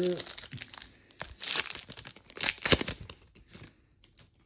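Foil wrapper of a Panini Chronicles trading-card pack being torn open and crinkled by hand: two bursts of crackling, about a second in and again near three seconds, the second louder with a sharp snap.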